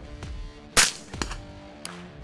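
A single suppressed rifle shot a little under a second in, sharp and short, over background music.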